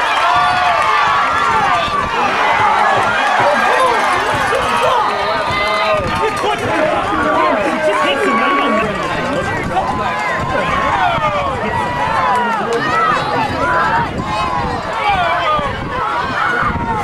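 Football crowd in the stands: many voices shouting and talking at once, none standing out.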